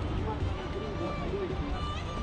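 Indistinct voices of people talking in the background, over a steady low rumble.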